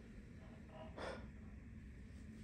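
A man's short audible breath, a quick intake of air about a second in, in an otherwise quiet pause in his talking.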